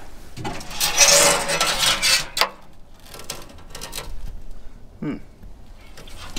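Sheet-metal lid of an Eaton Cutler-Hammer oil well controller enclosure being opened: metal scraping on metal for about two seconds, ending in a sharp clank, then a few lighter knocks.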